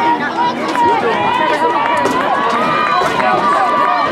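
Spectators shouting and cheering, several voices at once, with one voice holding a long high yell from about a second in to the end.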